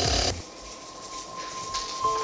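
Tabletop prize wheel spinning, its pointer clicking rapidly over the pegs. A steady high tone comes in about half a second in.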